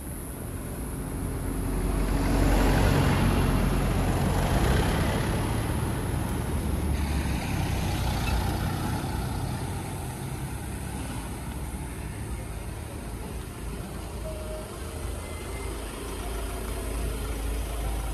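Road traffic: a car passing, its engine and tyre noise swelling about two seconds in and fading over the next few seconds, then a steady low rumble.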